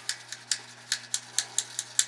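A run of short, sharp clicks, about five a second and unevenly spaced, as a brush wet with isopropyl alcohol scrubs a metal guitar tremolo claw.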